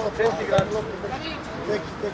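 Scattered raised voices of players and coaches calling out, with a single dull thud about half a second in.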